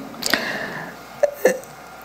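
A short pause in a preacher's amplified speech: the last word's echo fades in the hall, then come a few brief mouth sounds and a breath at the pulpit microphone, one early and two close together past the middle.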